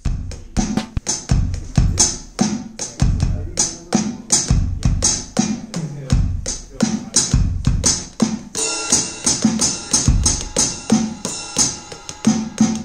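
Drum samples played live from a three-by-three pad drum machine struck with drumsticks: a fast, steady beat of kick drum, toms, snares and hi-hats. A sustained ringing sound joins the beat about two-thirds of the way through.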